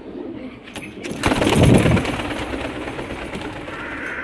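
Shami (Damascene) pigeon cooing. The sound is loudest for under a second, beginning about a second in, then fades.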